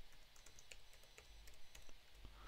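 Faint computer keyboard keystrokes, an irregular run of clicks, as a password is typed in.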